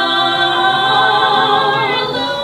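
Stage ensemble singing a musical-theatre number, holding a sustained chord.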